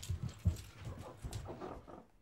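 Footsteps thudding on carpeted stairs as a person runs up, a few heavy steps in the first half second, then softer steps on the landing.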